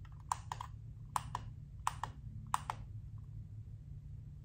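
Push-button clicks of a small rechargeable LED puck light being pressed repeatedly: four press-and-release double clicks, about 0.7 s apart, as it is switched on and off and through its modes.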